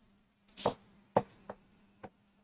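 Chalk writing on a chalkboard: about four short taps and scrapes as the letters are written, over a faint steady hum.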